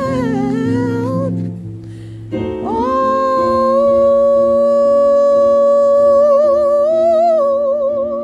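A woman singing wordlessly over held keyboard chords: a short wavering phrase, a brief dip, then one long held note that takes on vibrato near the end.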